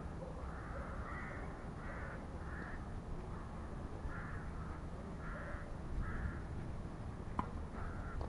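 A crow cawing repeatedly: about seven short harsh calls in two runs, with a single sharp knock near the end.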